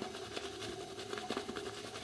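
Faint soft scratching of a shaving brush working lather over a day's stubble, with a faint steady hum behind it.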